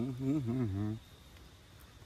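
A man's closed-mouth 'mmm' hum of enjoyment as he eats, wavering in pitch and lasting about a second, followed by faint background with a thin steady high tone.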